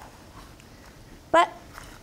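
Faint, soft cutting sounds of a chef's knife slicing a poblano pepper on a wooden cutting board, in a quiet pause broken by one short spoken word.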